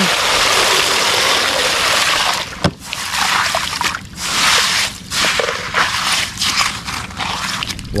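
Water splashing and sloshing as a hand scrubs a plastic toy dump truck in shallow muddy water, in uneven bursts with short breaks.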